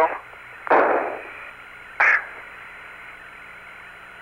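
Steady hiss of the Apollo 17 lunar-surface radio link, with two short bursts of noise on the channel: a broad one under a second in that dies away, and a brief sharper one about two seconds in.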